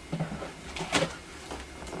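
Light knocks and scuffs of a large cardboard box being handled, with one sharp tap about a second in.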